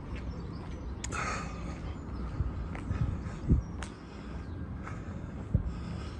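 Footsteps and small knocks of someone walking along a paved outdoor path while carrying a phone camera, over a low outdoor rumble, with a few scattered thumps.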